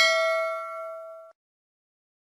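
A bell-like ding sound effect for a notification-bell click, ringing with several pitches at once and fading, then cut off suddenly just over a second in.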